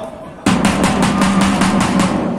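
A supporters' drum beaten fast and evenly, about seven strokes a second, starting suddenly about half a second in, with a steady low tone beneath.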